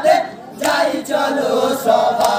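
Male chorus singing a Muharram marsiya (Bengali jari gaan) together, with a short break about a third of a second in before the voices come back in.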